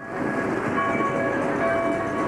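Steady rush of a 2018 Sea-Doo GTX Limited personal watercraft running across open water. Faint ringing bells sound over it from about half a second in, their tones holding and overlapping.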